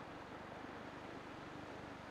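Faint, steady hiss of quiet outdoor ambience, with no distinct events.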